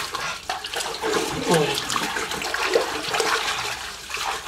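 Pool water splashing and sloshing as people swim and duck under in a small swimming pool.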